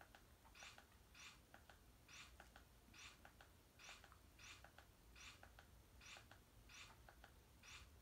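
Near silence with faint, evenly repeated clicks, a little more than one a second: remote-control buttons pressed over and over to step through a TV menu's list of settings.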